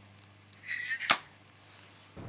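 A short, faint vocal sound, then, just after a second in, a single sharp click as the mobile phone is taken down at the end of the call.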